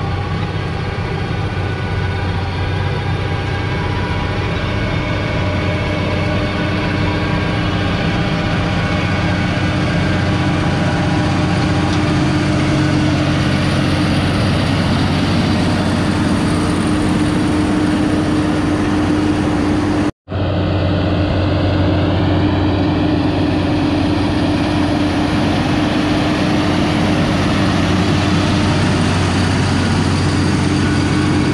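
Farm tractor engine running steadily under load while pulling soil tillage implements, a continuous hum with steady low tones. The sound drops out for an instant about two-thirds of the way through.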